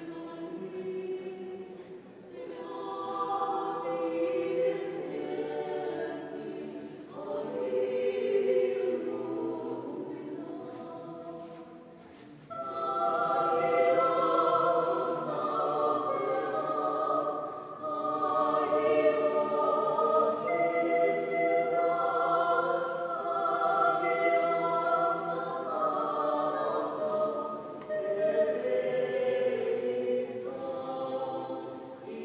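Small mixed vocal ensemble, women's voices with one man's, singing sacred choral music a cappella in long sustained phrases that swell and fade. The sound drops away briefly about twelve seconds in, then the voices come back in louder.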